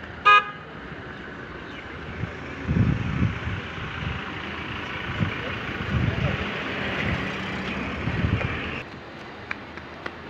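A vehicle horn gives one brief toot a moment after the start. Then a steady rushing noise with a few low thumps builds from about two and a half seconds in and stops abruptly near the end.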